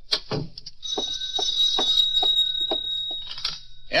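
Radio-drama sound effects: a telephone bell rings for about two and a half seconds while footsteps cross the floor at about two steps a second.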